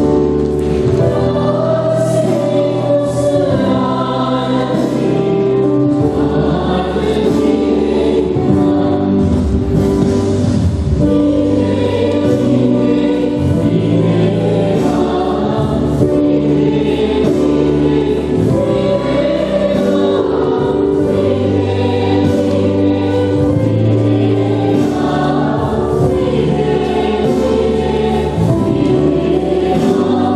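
A church choir singing a hymn over sustained instrumental accompaniment with held low bass notes.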